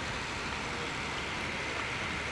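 Steady background noise with a low rumble, and no speech.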